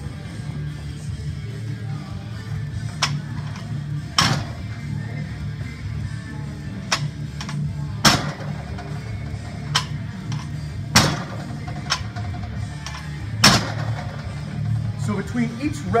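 Background music, with a loaded barbell's bumper plates knocking on the floor about every three seconds as Pendlay rows are done, the bar set down to rest on the ground between reps.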